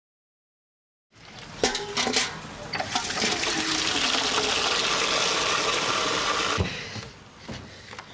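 A loud, steady rush like running or flushing water, preceded by a few sharp clicks and knocks, cutting off suddenly about two thirds of the way through.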